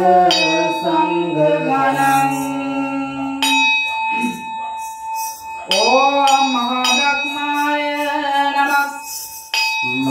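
A ritual bell struck about four times, each strike ringing on, over a voice chanting a devotional song.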